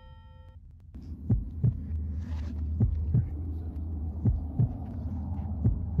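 Heartbeat sound effect: pairs of low thumps repeating about every second and a half, over a steady low drone.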